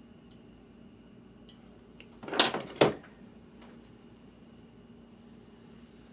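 Quiet room tone with a steady low hum and a few faint clicks, broken by a brief double rustle-scrape about two and a half seconds in: hands handling a cut block of melted HDPE plastic.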